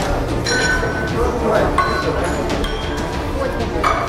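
Indistinct chatter of spectators and officials in a large hall, with a few light clinks.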